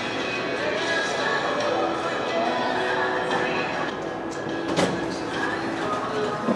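Shopping-mall ambience: background music with held tones over a murmur of distant voices and room noise. A single sharp click sounds near the end.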